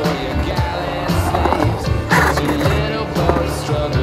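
Skateboard wheels rolling on a concrete bowl as the skater carves the transition, with a rush of board noise about two seconds in, under rock music.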